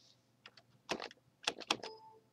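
A quick, uneven run of about six sharp clicks from working a computer's mouse and keys, most of them bunched in the second half.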